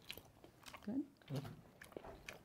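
A person chewing a mouthful of cheese-filled tortelloni close to the microphone, with a few faint wet mouth clicks and a short murmured "good" about a second in.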